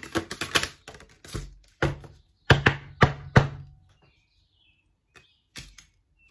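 Starseed Oracle cards being shuffled by hand: a quick run of light card clicks in the first second, then five sharp knocks or slaps of the cards between about two and three and a half seconds in.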